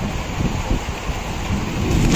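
Rain falling steadily in a thunderstorm, with a sudden loud clap of thunder breaking in right at the end as lightning strikes.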